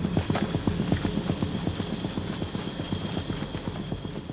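A fast, irregular run of clacking knocks that starts suddenly and slowly fades.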